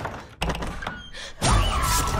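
Horror film trailer sound effects: a heavy thud about half a second in, then a louder hit near the end, over music.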